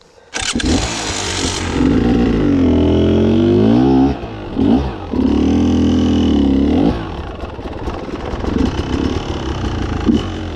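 Beta enduro motorcycle engine starting up suddenly about a third of a second in, then revved hard in several bursts with rising and falling pitch. It settles to a lower, uneven run for the last few seconds.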